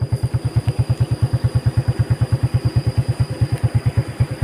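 Yamaha Vega motorcycle's single-cylinder four-stroke engine running at low revs, an even pulse of about ten beats a second.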